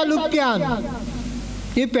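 A man speaking into a microphone, with a short pause a little past halfway.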